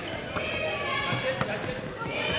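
Basketball game sound in a school gym: a basketball bouncing on the hardwood floor, with players' and spectators' voices in the background.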